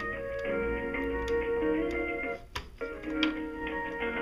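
Music on hold from an Asterisk phone server, heard through a Digium D50 IP phone's speaker. About two and a half seconds in, the music drops out for under half a second with a click, then carries on: the call's audio being rerouted to the other service provider as the router fails over.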